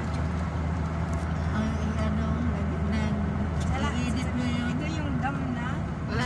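Steady low rumble of a car's engine and tyres heard from inside the moving car as it drives through a road tunnel, with faint voices over it.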